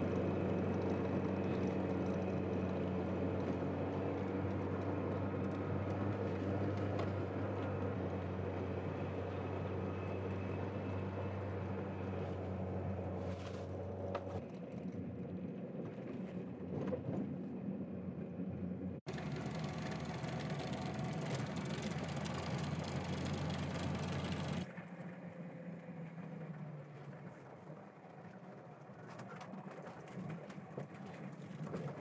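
Lada Niva 4x4's engine running with a steady low drone as it drives on a rough dirt track. The sound changes in character a few times, with an abrupt cut partway through, and it is quieter over the last few seconds.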